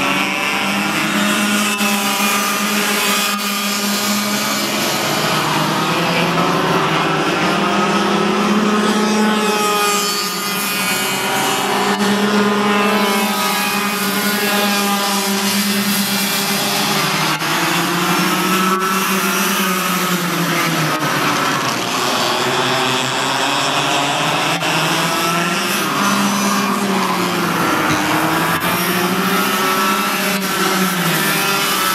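Several Yamaha cadet-class racing karts' small two-stroke engines buzzing together in a pack. Their pitches overlap, climbing as they accelerate and dipping as they back off for the corners.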